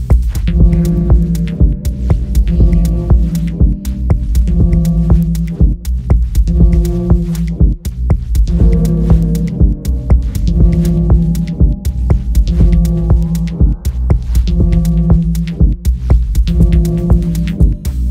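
Dub techno track: a steady kick drum under a deep, sustained bass with short chord stabs repeating in a looped pattern. A rising filter sweep comes in about two-thirds of the way through.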